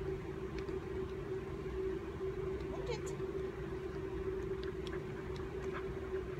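A steady low mechanical hum with a low rumble beneath it, with a few faint light taps of footsteps on a hardwood floor.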